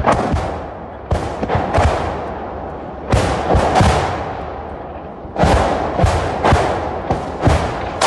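A salvo of BM-21 Grad rockets exploding close by in quick succession: about fifteen loud, sharp booms in irregular clusters, each trailing off in a rolling echo.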